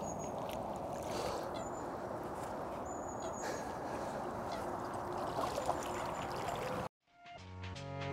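Shallow lake-margin water sloshing and trickling as a carp is released by hand, a steady watery hiss with a few faint high whistles over it. It cuts off suddenly near the end and music starts.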